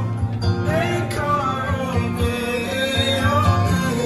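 A group of men singing a song together, with instrumental accompaniment.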